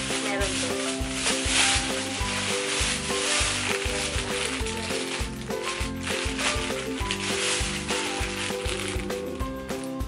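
Thin plastic bags and a plastic courier pouch crinkling and rustling as they are handled and opened. Background music with a steady beat plays underneath.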